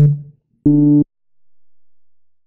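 Synth bass notes from an Omnisphere patch sounding as they are clicked into the FL Studio piano roll: one note ending just after the start, then a second short steady note about two-thirds of a second in, lasting under half a second.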